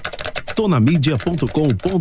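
Computer keyboard typing sound effect: a rapid run of key clicks at the start, then a man's voice speaks over it.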